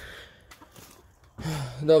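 A short breathy exhale, then near quiet, then a man's voice starting to speak near the end.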